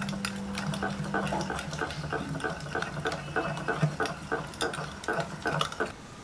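A wire whisk beats wet banana-bread batter of mashed banana, butter and egg in a glass bowl. It makes a quick, even rhythm of about five strokes a second, with the whisk tapping the glass. The whisking stops near the end.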